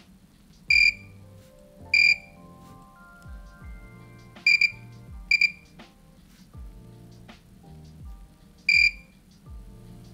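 Digital multimeter in continuity mode giving short, high beeps, about six at irregular intervals, one of them a quick double, as the probes touch the pins of a freshly soldered LED-strip connector; each beep marks a conducting solder joint. Quiet background music plays underneath.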